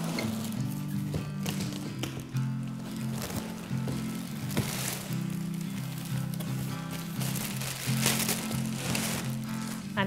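Background music with sustained low chords that change every second or so. A few brief rustles, about halfway through and again near the end, as the cardboard box holding the plastic-bagged stroller is tipped upright.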